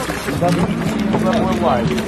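People's voices talking and calling out, words unclear, over a steady low hum.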